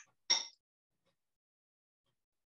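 A person clearing their throat once, briefly, over a video-call microphone.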